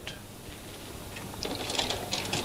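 Faint mechanical whirring with a few light clicks that start about one and a half seconds in, the sound of a slide projector running and changing slides.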